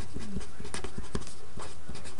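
Handwriting with a pen: a string of short scratching strokes and taps over steady background hiss.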